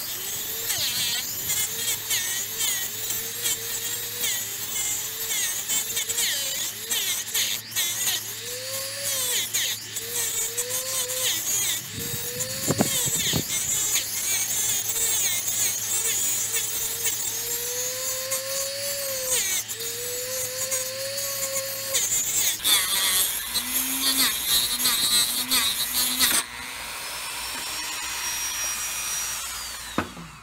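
Dremel rotary tool with a diamond cut-off disc grinding through the neck of a thick glass bottle. The motor's whine wavers and dips as the disc bites, over a gritty, scratchy grinding hiss. About four seconds before the end the grinding gives way to a smoother, steadier sound.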